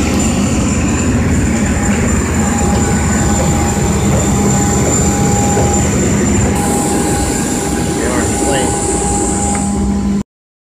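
Steady, loud jet-turbine noise on an airport ramp: a deep rumble with a high, thin whine held throughout and a mid-pitched hum that drops out for about a second midway.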